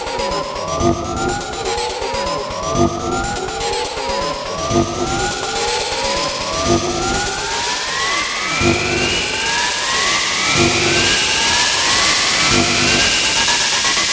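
Melodic house music in a build-up: synth sweeps rise in pitch, a new one starting about every two seconds and overlapping the last, over a pulsing beat. The whole thing grows gradually louder.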